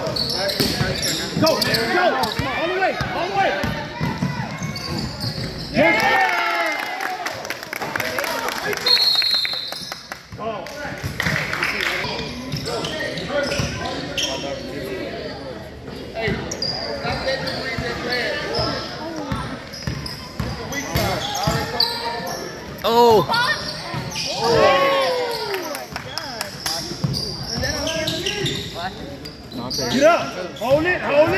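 A basketball dribbled on a hardwood gym floor, its bounces mixed with the shouts and chatter of players and spectators throughout.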